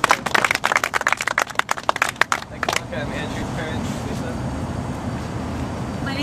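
A small crowd clapping, the applause dying out about three seconds in. A steady low background rumble with faint voices remains.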